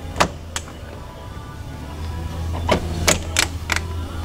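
Sharp clicks and snaps of a 2007–2014 Jeep Wrangler JK's plastic front grille being worked loose by hand from its snap-in retaining clips. There are two near the start and a quicker run of four in the last second and a half, over a low steady hum.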